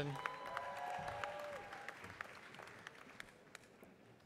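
Audience applause with individual claps, dying away over a few seconds. A brief held tone sits over it in the first second and a half.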